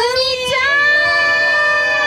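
A young woman singing one long held note into a microphone, unaccompanied: the voice slides up into it and then holds it steady.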